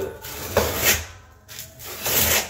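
Flat trowel scraping over a Schluter membrane inside-corner piece, pressing and smoothing it into thinset in the shower corner: two scraping strokes, the second starting about halfway through.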